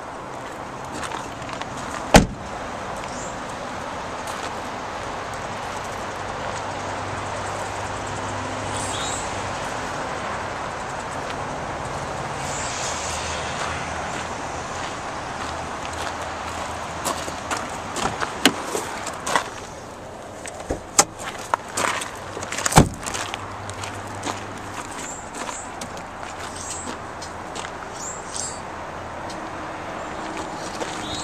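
A car door of a 2005 Toyota Corolla shuts with a sharp thump about two seconds in, over steady outdoor noise. Later come scattered clicks and knocks of the car's panels being handled, with a second heavy thump about two-thirds of the way through.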